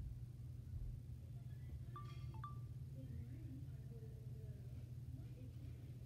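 Quiet room with a steady low hum, and two short high beeps close together about two seconds in.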